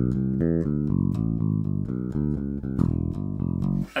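Electric bass guitar playing a bass line of single plucked notes, about four notes a second, stopping just before the end.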